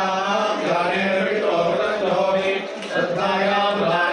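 Priests chanting mantras in a steady recitation for an abhishekam, the ritual bathing of a deity's image, with brief breaks between phrases.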